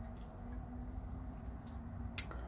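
Faint handling of a folding knife turned over in a gloved hand: two soft ticks over a low steady hum.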